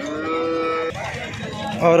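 Cattle mooing: one steady, level moo lasting about a second that stops abruptly.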